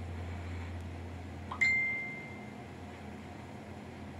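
A single ding about a second and a half in, ringing out and fading over about a second, over a steady low hum.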